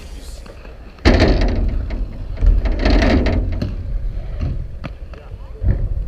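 Wind buffeting the microphone in a heavy low rumble, with rolling and knocking from a BMX bike riding toward and up the ramp, loudest twice in the first half.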